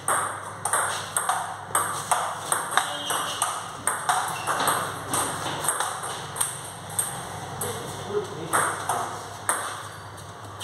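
Table tennis rally: a quick, irregular run of sharp clicks as the ball strikes the rubber-faced paddles and bounces on the table top, a few hits a second with short breaks between points.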